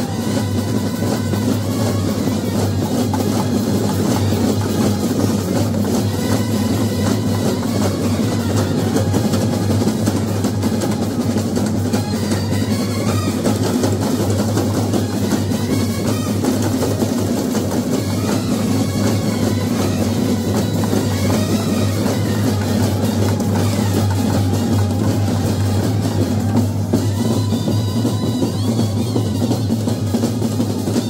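Kerala-style brass band playing loudly: bass drums, snare drums and cymbals keep a steady, driving beat under trumpets and other brass horns.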